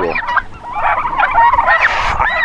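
A flock of broad-breasted white turkeys calling, many short, wavering calls overlapping one another.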